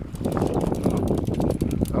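Wind buffeting the microphone on an open boat at sea: a steady, dense low rumble.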